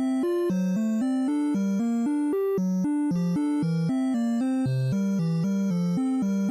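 Background music: a steady tune of short, evenly paced notes, about four a second, over a stepping bass line.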